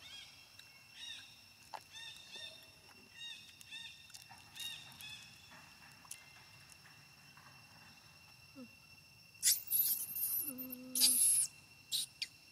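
Short, high-pitched animal chirps repeated many times over the first few seconds, over a faint steady high drone. Near the end come a few louder, harsh hissing bursts.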